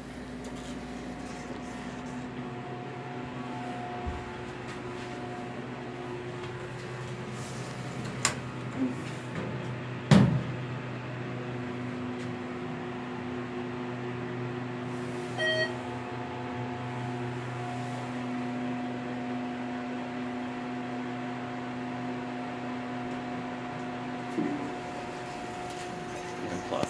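Steady electrical hum inside a ThyssenKrupp hydraulic elevator car as it travels down; the pump motor does not run on the way down. A sharp click comes about ten seconds in, with a smaller one just before it, and a short beep-like tone about fifteen seconds in.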